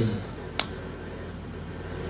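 A pause in the talk: steady low hum and hiss of the room and recording, with one sharp click about half a second in.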